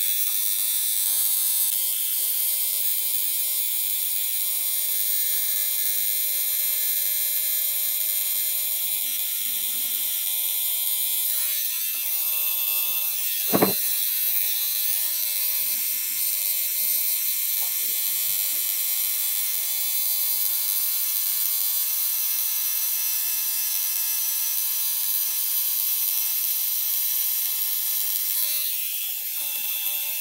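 Cartridge-needle tattoo pen machine running with a steady hum as the needle works ink into skin along the outline. A single sharp click sounds about 13 to 14 seconds in.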